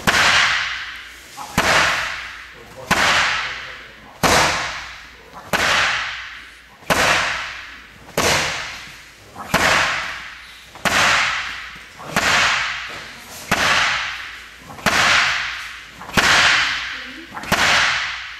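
Bare-fist punches landing on a wall-mounted wooden makiwara striking post, one sharp smack about every 1.3 seconds in a steady rhythm, each trailing off over about a second.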